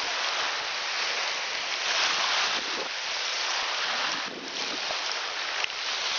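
Small waves washing onto a sandy beach, a steady hiss of surf that swells about two seconds in and eases a little later, with wind on the microphone.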